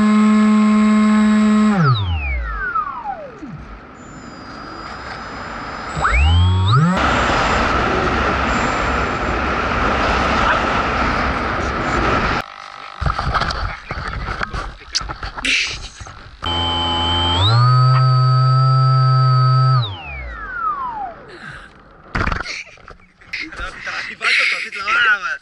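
Electric motor and propeller of a Bixler RC foam plane whining steadily under throttle, heard close from a camera on the plane. The pitch glides down as the throttle is cut about two seconds in, rises again around six seconds into a rush of air, then a second steady whine near the end of the flight winds down, followed by scattered knocks.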